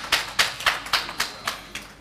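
Audience applauding with many irregular hand claps, the clapping thinning out and getting quieter toward the end.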